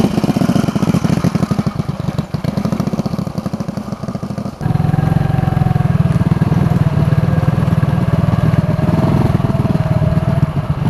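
Small underbone motorcycle engine running as it is ridden along a dirt path, a fast, even pulse of exhaust beats. About halfway through the sound jumps abruptly to a louder, steadier run.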